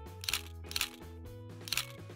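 Camera shutter clicks, three in about two seconds, over light background music.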